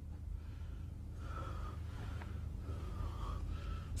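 A man's heavy breathing over a low, steady hum.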